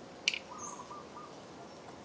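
A sharp click, followed by faint, short, high chirps and whistle-like notes.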